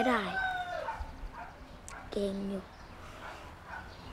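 A rooster crowing once, its call falling in pitch over about the first second, over a boy's speech in Thai.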